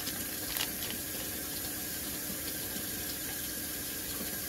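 A steady rushing noise, with a few faint crinkles of a plastic pouch being handled in the first second.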